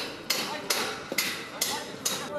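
Hammer blows, four sharp strikes about two a second, part of stage-building work.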